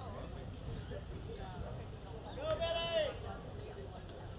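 Outdoor crowd with scattered voices over a steady low rumble, and one loud, high whoop, rising then falling, about two and a half seconds in and lasting about half a second.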